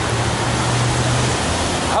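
Steady hiss of rain falling on umbrellas and wet pavement, with a low hum underneath that fades after about a second and a half.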